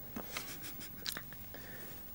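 Faint small clicks and rustles of hands at a table top, putting glue from a tube onto a plastic toothbrush handle, most of them in the first second.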